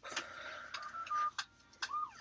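A child whining faintly in the background with short, thin, high held notes, and two sharp clicks in the second half.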